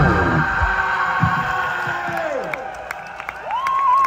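Electric guitars ringing out after the final chord of a live punk song, the held notes sliding down in pitch as they fade. Near the end, a single guitar feedback tone swells up and holds, over faint crowd cheering.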